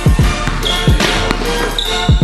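Hip-hop style background music with a steady beat and deep bass hits that slide down in pitch.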